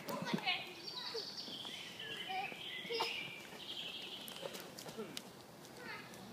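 Children's voices shouting and calling at a distance, high-pitched and wordless, with a few light footfalls on the dirt.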